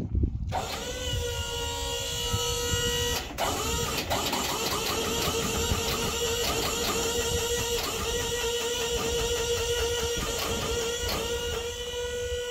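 Electric motor on a roll-off tilt trailer running with a steady whine and a fast stutter through it. It spins up about half a second in and breaks off and restarts a little after three seconds. This is the 'Lodar chatter': the trailer cutting in and out as the wireless remote loses signal.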